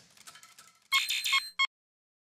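Short electronic logo chime: three quick bright beeping tones and a brief final blip, cutting off abruptly into silence.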